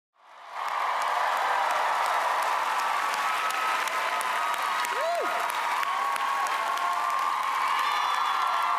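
A large audience applauding and cheering, fading in over the first half second and then holding steady. A single voice rises and falls above the clapping about five seconds in.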